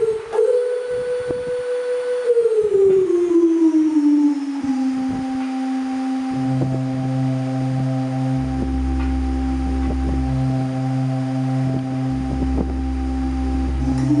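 Portable electronic keyboard playing an improvised piece. A held synth lead tone slides down in pitch over about two seconds, then holds steady, and low sustained bass notes come in about halfway through.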